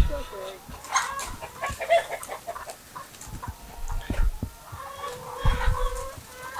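A flock of laying hens clucking with many short, scattered calls and one drawn-out call near the end, over a few low thumps.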